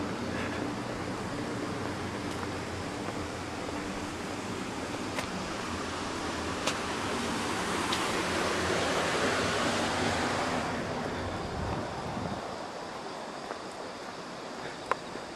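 Street ambience: a steady low hum under a rush of noise that swells from about eight seconds in and fades by eleven, with the hum stopping near the end.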